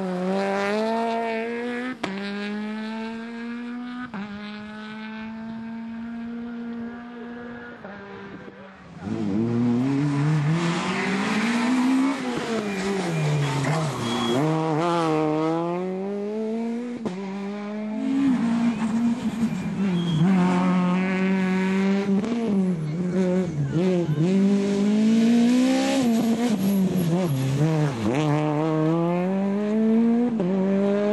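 Peugeot 208 rally car's engine revving hard and changing gear, its pitch climbing steeply and dropping sharply again and again, with tyre noise on a wet road. The sound breaks off abruptly a few times where one pass cuts to the next.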